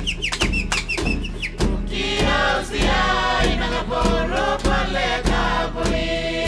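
Torres Strait Islander dance song: a group of voices singing over a steady percussion beat of about one strike every 0.6 s. The singing comes in about two seconds in, after a run of short, falling, high-pitched calls.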